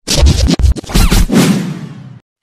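Intro transition sound effect: a quick run of record-scratch-like hits in the first second, then a whoosh that fades away over the next second.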